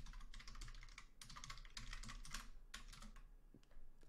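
Faint, rapid keystrokes on a computer keyboard that thin out and stop about three seconds in.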